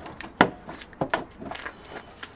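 Plastic rear light cluster knocking and scraping against the van body as its clips are lined up with the mounting holes: a sharp knock about half a second in, then a few lighter taps.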